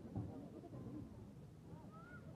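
Faint, indistinct background voices of people talking at a distance, with a brief knock or bump about a fifth of a second in.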